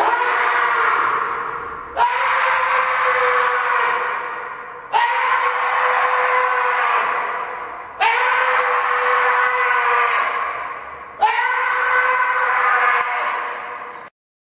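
A voice-like wail held at one high pitch, heard five times, each cry starting suddenly and fading away over two to three seconds, the same cry repeated like a loop.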